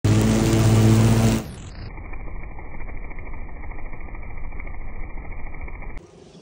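Small gasoline engine of lawn-cutting equipment running at high speed while cutting grass, loud for about the first second and a half. It then drops to a quieter, muffled rumble.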